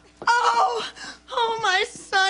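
A woman's voice wailing in two drawn-out, wavering cries.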